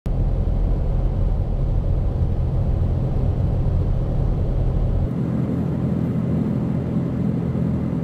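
Steady road and engine rumble heard from inside a moving vehicle's cabin at highway speed. The deepest part of the rumble drops away about five seconds in.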